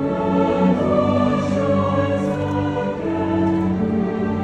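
A school choir singing with a string orchestra in long, held chords.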